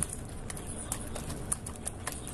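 Black whisk beating an egg into thick, sticky batter in a glass bowl: irregular clicks and taps of the whisk against the glass, about five in two seconds, over a low steady rumble.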